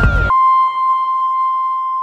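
A break in an electronic track: the beat and bass drop out a fraction of a second in, leaving one steady high synth tone, like a beep, held and slowly fading.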